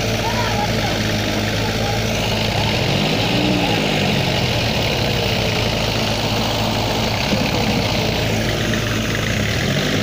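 Diesel tractor engines working hard under heavy pulling load in a tug-of-war, running steadily. About three seconds in, one engine revs up and drops back, and it revs up again near the end.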